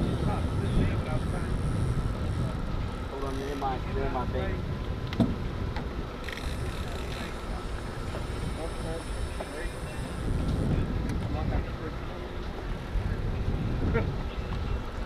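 Wind buffeting the microphone in a steady low rumble, with faint voices in the background and one sharp click about five seconds in.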